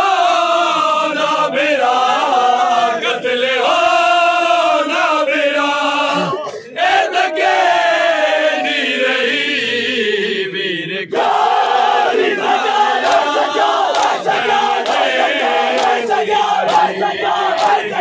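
A group of men chanting a noha, a Shia mourning lament, in unison, with long sung lines that slide down in pitch. About eleven seconds in, the chanting grows fuller and sharp, repeated slaps of matam chest-beating join it.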